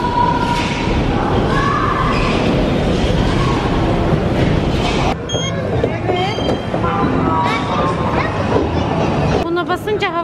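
Amusement-arcade din: a dense, steady rumble of many running game machines. About five seconds in it changes abruptly to a thinner mix of short electronic beeps and gliding chirps from the games.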